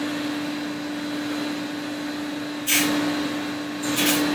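Steady fan-like hum with a constant low tone running underneath. About two and a half seconds in, a short scraping rustle as a thin laser-cut stainless-steel sheet sample is handled.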